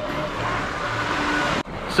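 Road noise inside a moving car's cabin: a steady hiss of tyres on wet pavement, which cuts off abruptly about one and a half seconds in, leaving a quieter hum.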